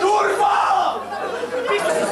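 A crowd of people shouting together, starting suddenly and staying loud.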